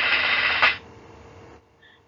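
Whoosh sound effect for a presentation slide transition: a hiss swelling in loudness, cut off by a sharp click about two-thirds of a second in, then a fainter hiss that stops near the end.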